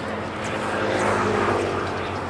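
An engine drone at a steady pitch, swelling to its loudest about a second in and easing off near the end, like a motor or light aircraft passing at a distance.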